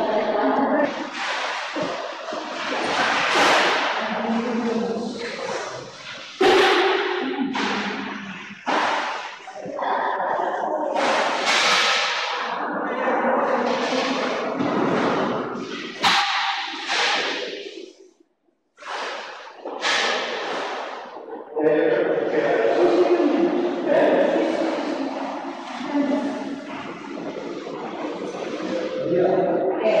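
Indistinct voices talking, continuous apart from a brief break about two-thirds of the way through.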